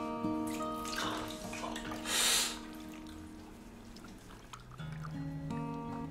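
Soft acoustic guitar music holding sustained notes, with a short splash of water at a bathroom washbasin about two seconds in, the loudest moment.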